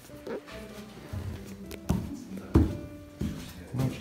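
Background music with held tones, with two short thumps about two and two and a half seconds in, the second the loudest.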